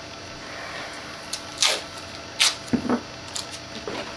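Tape being pulled off its roll and torn, a few short rips with small handling noises between them.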